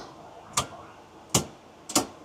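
Circuit breakers in a breaker panel being switched on, three sharp clicks under a second apart, putting the load circuits onto the newly started inverter.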